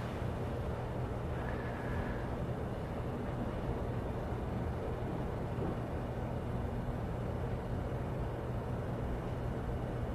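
Steady low hum with a faint hiss of background noise, no speech, and a brief faint high tone about two seconds in.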